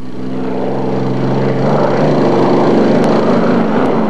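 Unlimited racing hydroplane's engine running at speed, a loud steady drone that shifts pitch about halfway through.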